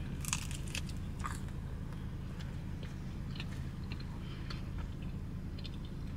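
Biting into and chewing a soft, untoasted jalapeño cheddar bagel with cream cheese: faint, scattered mouth and bite clicks, most in the first second, over a steady low hum.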